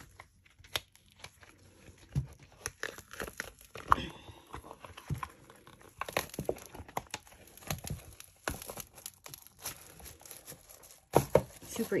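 A silicone tray mold being peeled off a cured resin tray: irregular crackling and tearing as the silicone releases from the hardened resin, with a few louder pops.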